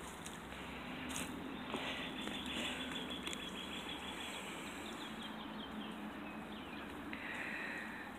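Birds chirping faintly in short repeated calls over a steady outdoor hiss.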